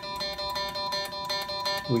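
Electric guitar picked rapidly and evenly on one string, a single note repeated at about a dozen down-and-up pick strokes a second.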